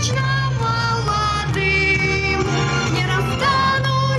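A song: a sung melody of held, wavering notes over instrumental accompaniment with a steady bass line.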